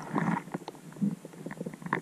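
Underwater sound during a freedive descent: scattered faint clicks and a few short, low muffled bumps.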